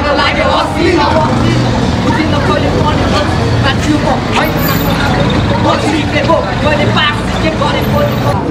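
Several men's voices shouting and talking over one another, over a steady low rumble from a vehicle engine close by.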